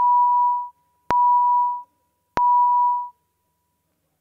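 Three identical electronic beeps of one steady pitch, each about three quarters of a second long with a sharp click at its start, spaced a little over a second apart: a legislative chamber's voting-system tone signalling that the roll call vote is open.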